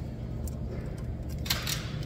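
Small handling noises of a screwdriver and wiring at a control panel: a faint click about half a second in, then a brief scrape about one and a half seconds in, over a steady low background hum.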